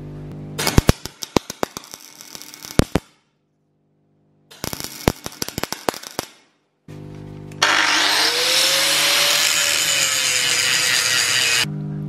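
Wire-feed (MIG) welder arc crackling in short sputtering bursts as nuts are tacked onto threaded rod ends, then a steady, louder crackling hiss of a continuous weld for about four seconds near the end. The sound cuts out abruptly twice between bursts.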